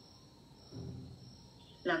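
Pause in a man's talk: quiet room tone with a faint steady high whine, a short low murmur about 0.7 s in, and a man laughing near the end.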